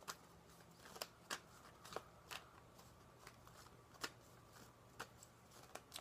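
A tarot deck being shuffled by hand: faint, irregularly spaced soft clicks and ticks of the cards against each other.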